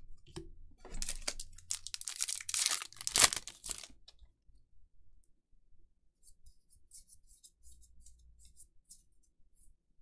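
The foil wrapper of a Magic: The Gathering draft booster pack being torn open and crinkled for about three seconds, then faint ticks of trading cards being handled.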